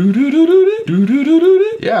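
A man's voice imitating the tone heard at the start of a cassette tape: a hummed note that rises and wavers in pitch, sung twice in a row. A short "yes" from another man comes at the end.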